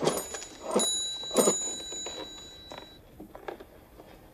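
A small bell struck three times in quick succession, the second and third strokes close together, its high ringing note fading away over a second or two.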